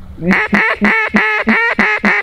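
A duck call blown in a rapid, loud series of quacks, about three a second, calling to ducks that are dropping in toward the decoys.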